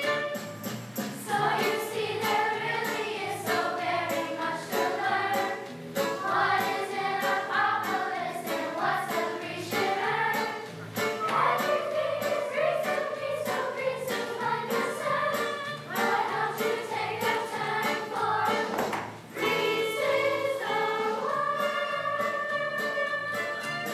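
Children's choir singing together over an instrumental accompaniment with a steady beat, dropping out briefly near the end before going on.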